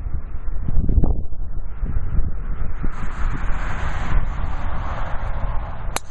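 Wind rumbling on the microphone, with a hiss of road traffic swelling through the middle. Right at the end comes one sharp crack of a golf driver striking the ball off the tee.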